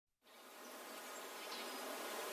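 Faint hiss-like noise fading in at the very start of an indie ballad's intro, swelling steadily, with nothing in the bass.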